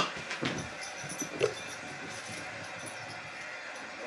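A short laugh in the first second and a half, followed by the steady hum of the arena crowd in a TV basketball broadcast, picked up from the television's speaker.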